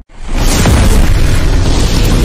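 Explosion sound effect from a logo intro: after a brief cut-out, a loud boom sets in within the first half-second and holds, heavy at the low end, through the logo reveal.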